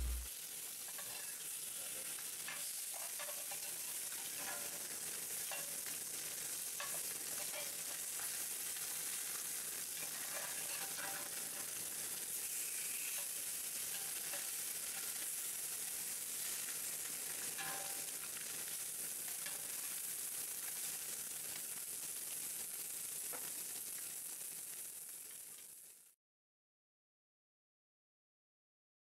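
Tilapia fillets sizzling in hot lard in a cast iron skillet: a steady high hiss dotted with small crackles and pops, as the spice crust blackens. The sizzle fades and cuts off near the end.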